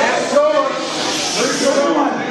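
Speech: voices talking in a hall, words not made out.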